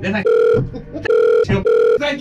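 Electronic bleep tone sounding four times in short, unevenly spaced bursts, cutting over a man's speech: censor bleeps covering his words.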